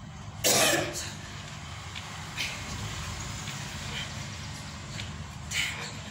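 A woman's short, forceful bursts of breath as she punches: a loud one about half a second in and a smaller one near the end. A steady low hum runs underneath.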